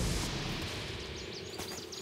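A cartoon soundtrack's noisy tail dying away, with faint, short, high bird chirps in the second half.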